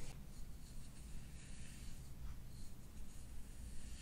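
Thick-toothed scraping comb dragged through wet hair over the scalp, a faint repeated scratching.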